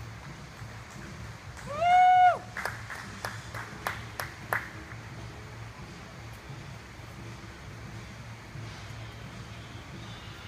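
A single high whooping cheer from one person, rising, holding and falling, followed by about eight handclaps at roughly three a second, over a steady low hum.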